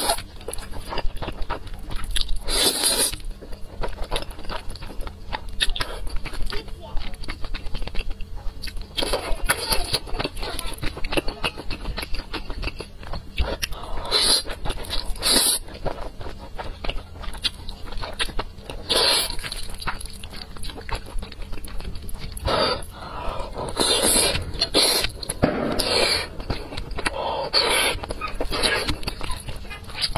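Close-miked slurping and chewing of spicy cheese instant noodles, coming in repeated wet bursts every few seconds.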